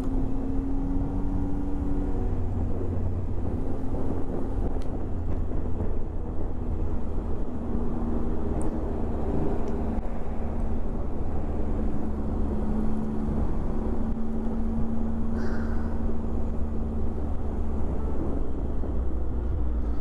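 Triumph Tiger motorcycle engine running steadily at cruising speed, with wind rushing over a helmet-mounted microphone. The engine note drops slightly about two seconds in and then holds steady.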